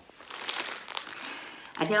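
Clear plastic bag wrapping a loaf crinkling as it is handled, a run of sharp crackles, before a woman starts speaking near the end.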